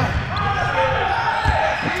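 A basketball bouncing on a hardwood gym floor during play, with a couple of sharp dribble thumps near the end.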